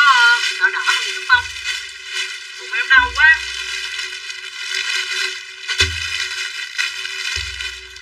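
Clear plastic packaging crinkling as bagged clothes are handled, over background music with occasional deep bass hits.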